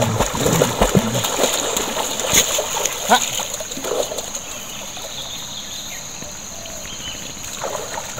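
Water splashing as a dog is dunked and paddles in a shallow river, with many sharp splashes in the first few seconds. After that it settles into the quieter steady wash of moving river water, with a high insect drone underneath.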